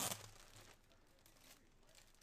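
Clear plastic bag crinkling as it is handled, loudest right at the start and fading within the first half second to faint rustling.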